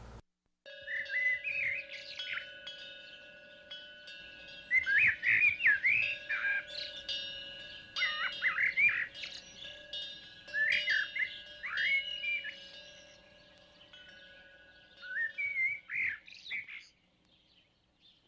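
Birds chirping and calling in short rising and falling phrases over several held steady tones, starting suddenly and stopping about a second before the end.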